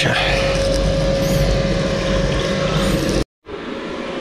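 A machine running steadily with a constant hum over a low rumble, stopping abruptly just past three seconds in.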